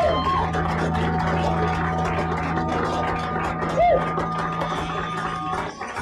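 Live rock band holding a final sustained chord, the bass note ringing steadily under a clatter of short drum and cymbal hits, until it stops shortly before the end; a short shout from a voice rises and falls about four seconds in.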